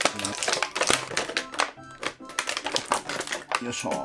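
Rapid clicking and crinkling of a thin clear plastic blister tray as toy parts are pressed out of it, over background music.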